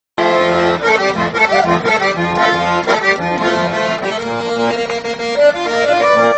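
A chamamé tune played live on accordion, with held chords over a rhythmic bass, and an acoustic guitar accompanying.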